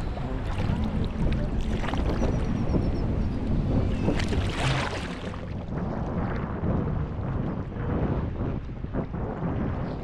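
Small sea waves sloshing and splashing against a camera held at the water's surface, with wind buffeting the microphone. The sound turns duller about halfway through.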